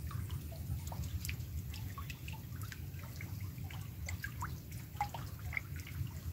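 Rain falling on a fish pond: many small raindrops plinking irregularly into the water, some with a quick upward pitch, over a steady low rumble.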